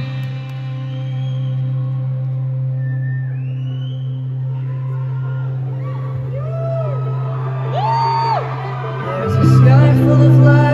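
Live band intro: a single low note held steady while scattered whoops rise from the crowd. About nine and a half seconds in, more notes join and the music gets louder.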